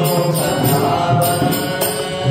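Tamil devotional bhajan music: a male singer's held, chant-like line over harmonium, with mridangam strokes and a regular beat of bright metallic strikes a couple of times a second.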